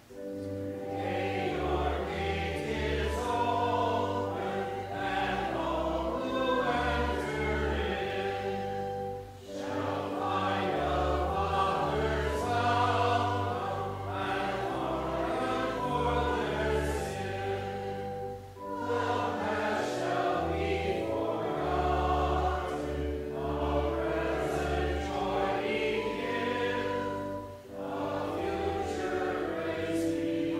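Congregation singing a hymn verse together with instrumental accompaniment holding steady sustained bass notes. There are short breaths between lines about every nine seconds.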